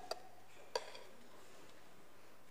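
Two light clinks of a metal spoon against ceramic cups as a custard mixture is poured into them, within the first second.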